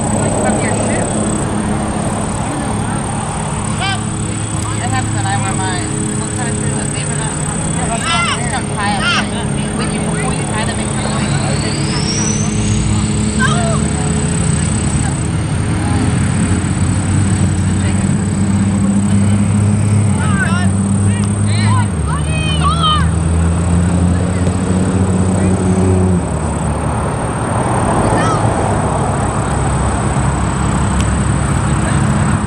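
Distant shouts and calls from youth soccer players on the field, over a steady low mechanical hum that shifts pitch in steps a few times.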